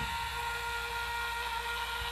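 A break in the music: steady hiss with a faint high, steady whine under it, until the band comes back in just after the end.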